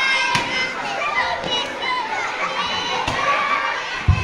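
A crowd of children shouting and calling out together, with a couple of short knocks.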